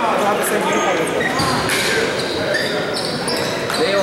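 Basketball gym ambience: many voices talking at once in a large, echoing hall, with short high sneaker squeaks on the hardwood floor and a basketball bouncing.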